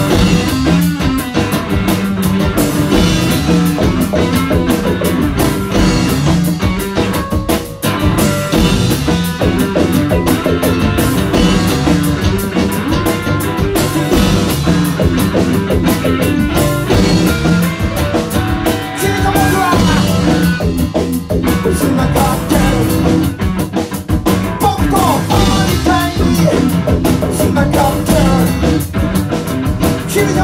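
Rock band playing, with drum kit and guitar, loud and without a break.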